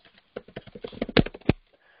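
Computer keyboard keys being typed: about ten quick, uneven clicks in a burst lasting just over a second, two of them louder.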